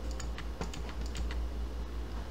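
Light, scattered keystrokes on a computer keyboard, about a dozen irregular clicks, over a steady low hum.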